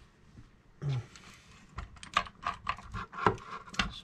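Small steel cylinder bolts clinking against each other as they are gathered up by hand, a rapid, irregular run of light metallic clicks.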